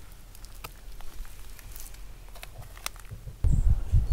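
Light crackles and clicks of dry leaves and twigs being stepped on, with heavier low thumps of handling near the end.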